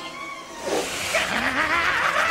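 Cartoon chase soundtrack: orchestral chase music mixed with a rushing whoosh effect for the magic carpet flying past, growing louder after about half a second, with men's voices crying out.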